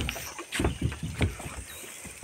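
A series of irregular knocks and thumps, the sharpest right at the start, over a steady background noise.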